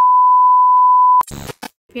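A loud electronic beep: one steady high tone at a single pitch that cuts off abruptly about a second in, followed by a brief crackle of noise.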